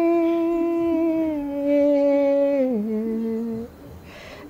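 An elderly woman singing a Malayalam light-music song unaccompanied. She holds one long note that steps down in pitch twice and trails off shortly before the end.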